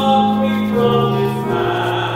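Church hymn singing: voices hold long, steady chords that move to a new chord twice.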